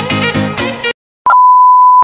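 Background music that cuts off abruptly just under a second in, followed after a brief silence by a loud, steady, single-pitched test-tone beep of the kind played with television colour bars.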